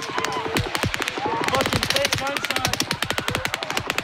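Phone recording of rapid automatic gunfire, about ten shots a second in long unbroken strings. People in the crowd shout and scream between the shots.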